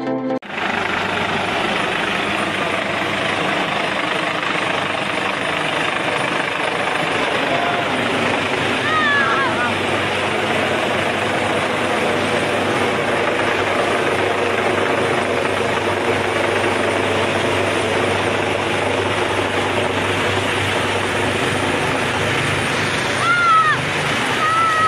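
Helicopter hovering low overhead: a loud, steady rotor and engine noise. A person's short call rises above it about nine seconds in and again near the end.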